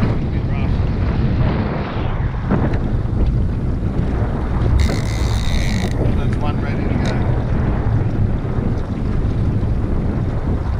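Wind buffeting the microphone over the steady running of a small boat's engine at trolling speed, with water washing against the hull. About five seconds in, a brief high-pitched sound lasts about a second.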